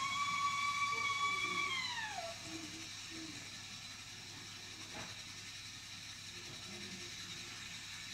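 A high-pitched voice holds a sung note for about two seconds, then slides down in pitch and fades out. Only a faint background follows, with a single soft click about five seconds in.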